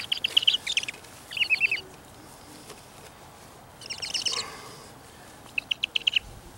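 A bird chirping in four short bursts of rapid, high notes, several quick notes to each burst.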